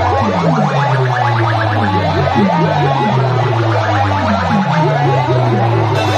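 Loud DJ music blasting from a truck-mounted sound-box rig of horn loudspeakers and bass cabinets: a steady low bass drone under repeated falling pitch sweeps, about two a second.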